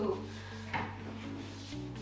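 A large wooden cabinet drawer being pulled open on its drawer slides, with one short knock about three quarters of a second in, over steady background music.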